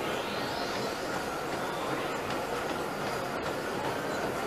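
Steady rumbling, hissing background noise of gym machinery, even in level, with a few faint clicks.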